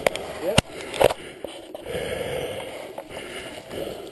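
Hot coolant and steam hissing and spraying from a radiator hose that has popped off a crashed Husqvarna dirt bike. Two sharp knocks come about half a second and a second in.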